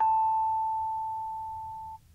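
A single bell-like chime note from the closing music, struck once and ringing as a clear, pure tone that slowly dies away before cutting off at the end.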